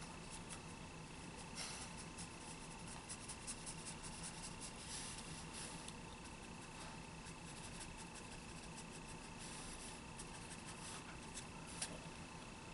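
Black felt-tip marker strokes rubbing on easel-pad paper, coming in faint, intermittent groups of strokes as areas are filled in solid black. A steady faint hum runs underneath.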